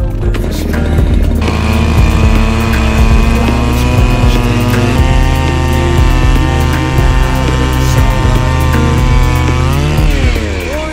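Gas-powered ice auger engine running steadily while drilling a hole through thick lake ice, with its pitch dipping and rising near the end. Background music plays along with it.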